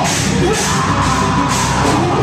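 Live metalcore band playing at full volume: distorted electric guitar, bass guitar and drum kit, with a screamed vocal over them.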